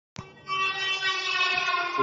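A sustained chord of several held tones, opening the intro. It starts abruptly with a click just after the start and holds steady.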